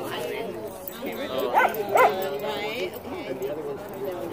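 A dog barks twice in quick succession, two short high yips under half a second apart, over background chatter.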